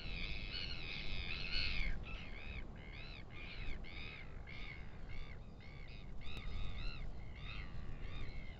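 A bird calling over and over in short, arched notes, crowded together in the first two seconds and then about three a second, over a low rumble of wind.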